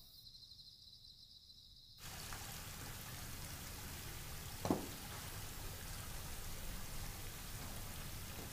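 Near silence, then from about two seconds in a steady, even hiss of rain falling. A little before five seconds there is one short thump.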